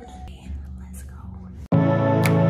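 Soft whispering over faint music. About three-quarters of the way through, a calm background music track with long held tones cuts in suddenly and much louder.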